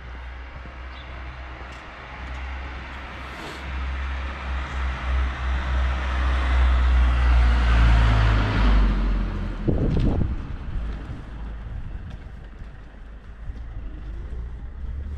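A motor vehicle passes close by: engine rumble and tyre noise build over several seconds, peak about halfway through, then fade. A short knock follows about a second later, over steady street background.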